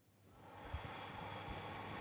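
A man breathing in slowly as part of an abdominal inspection: a soft, steady rush of breath that grows gradually louder.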